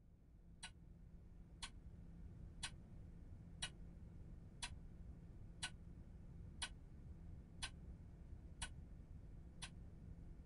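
Clock ticking steadily, about once a second, over a faint low hum.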